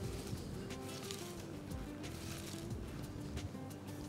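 Soft crunching and squishing of shredded raw cabbage being rubbed and squeezed by hand with sugar in a glass bowl, to start softening it for coleslaw. Quiet background music with held tones runs under it.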